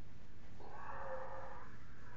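A person's voice played back in slow motion, stretched into one long, low, wavering call that starts about half a second in and fades near the end, over a steady low hum.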